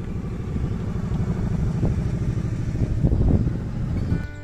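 Wind buffeting the microphone outdoors: a loud, irregular low rumble that swells about three seconds in.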